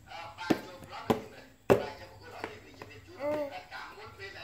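Three sharp knocks about half a second apart, with snatches of a voice between them and a short vocal sound near the end.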